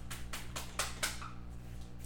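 A quick run of about six light, sharp clicks and taps in the first second, over a steady low electrical hum.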